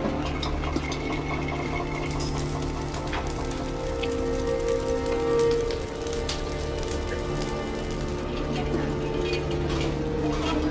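Film soundtrack: sustained music with a swell about halfway through, over scattered crackling that fits the fire burning on screen.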